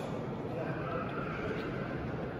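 Indistinct murmur of many visitors' voices filling a large stone hall, steady throughout. A faint, drawn-out higher sound rises out of the murmur for about a second near the middle.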